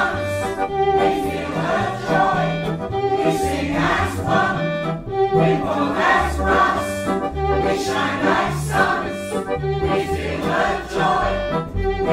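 Mixed-voice community choir singing in harmony, phrases changing about once a second over low held bass notes.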